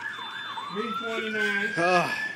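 A siren wailing, its single tone rising slowly in pitch from about half a second in.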